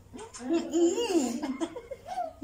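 A woman laughing through closed lips, pitched and rising and falling in a few bouts: stifled laughter while she holds water in her mouth so as not to spit or swallow it.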